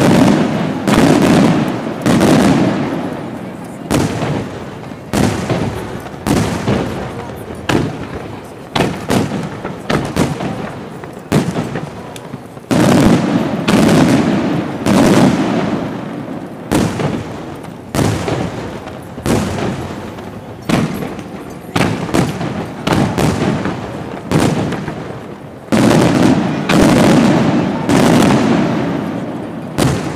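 Aerial firework shells bursting in rapid succession, a sharp bang roughly every second, each trailing off. The bangs come in three denser, louder volleys: at the start, about halfway through and near the end.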